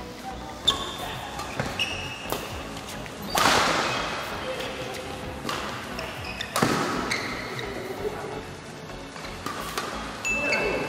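A badminton doubles rally: rackets striking the shuttlecock in sharp cracks at irregular intervals, the two loudest about three and a half and six and a half seconds in, with short high squeaks of court shoes between hits. Background music runs underneath.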